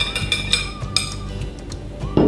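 Wire whisk scraping and clinking against a glass bowl and a stainless steel saucepan, a few light clinks mostly in the first second, as the custard mixture is poured into the pan. Soft background music plays throughout.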